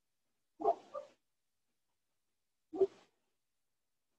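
A dog barking: a quick double bark about half a second in, then a single short bark about two seconds later.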